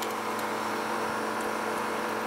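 Steady, even hiss of background noise with a faint low hum and no distinct events.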